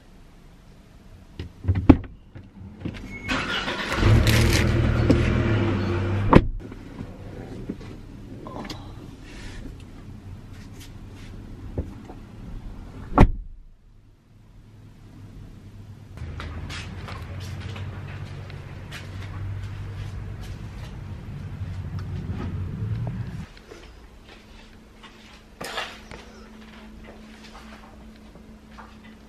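Car doors being opened and shut while a sleeping baby is lifted out of the back seat: several sharp thumps, the loudest about thirteen seconds in, with rustling and handling noise between them. Later a steady low hum runs for about seven seconds and stops suddenly.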